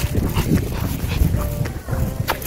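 A Pomeranian on a leash making small dog sounds, over a low rumbling noise with scattered short taps like footsteps.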